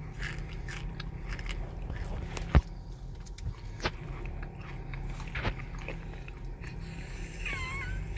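Low steady engine hum heard inside a car cabin, with scattered light clicks and one sharp knock about a third of the way in. A brief high warbling vocal sound comes near the end.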